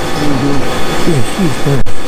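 A voice talking over the steady hum of a running large-format printer printing vinyl.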